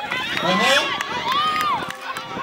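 Several voices shouting a tug-of-war count, 'four', about half a second in, followed by a long drawn-out call near the end.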